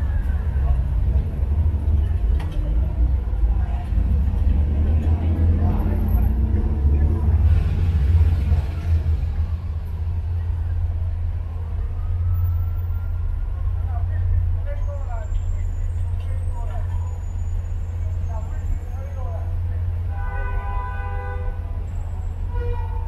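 Busy city street: steady low rumble of traffic with people talking, and a car horn honking briefly near the end.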